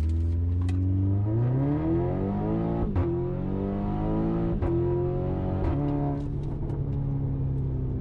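Audi TTS Mk2's tuned 2.0-litre turbocharged four-cylinder at full throttle through a catless exhaust, heard from inside the cabin. The revs climb, drop sharply at an upshift about three seconds in, climb again to a second upshift a little before five seconds, and after a short shift near six seconds settle to a steady, lower note.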